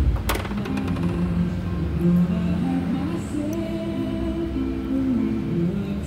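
Background music with held notes that change pitch every second or so; a single sharp click just after the start.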